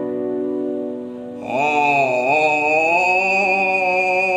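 Music: held electronic keyboard chords, then about a second and a half in a man's voice comes in singing a slow melody with wavering, bending pitch over the accompaniment.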